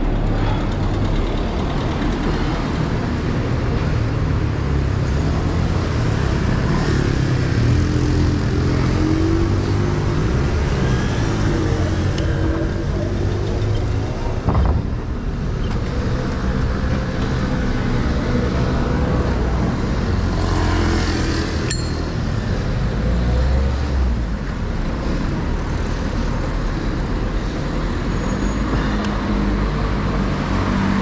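City street traffic heard from close among it: car and truck engines running nearby over a steady low rumble, with the pitch of an engine rising and falling now and then. There is a single short knock about halfway through.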